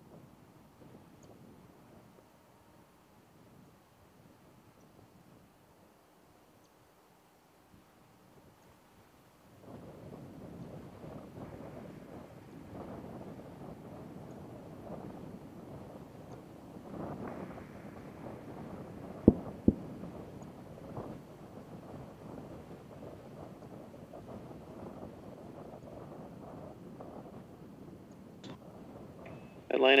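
Faint hiss, then from about a third of the way in steady wind noise on an outdoor microphone. About two-thirds in comes Space Shuttle Atlantis's double sonic boom: two sharp booms a little under half a second apart, the sign of the orbiter descending toward the runway. A radio voice begins at the very end.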